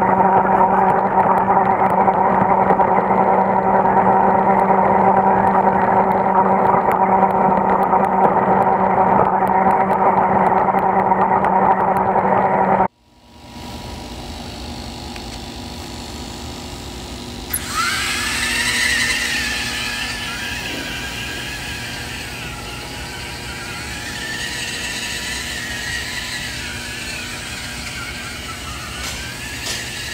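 Small DC gear motors of a toy robot car running. For the first dozen seconds there is a loud, steady hum of constant pitch. After an abrupt cut it is quieter, and from a few seconds later a higher whine rises in and wavers up and down in pitch as the car speeds up, slows and turns.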